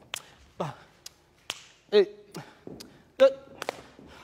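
A man marking a dance rhythm with three short sung syllables, the last the loudest, with sharp clicks scattered between them.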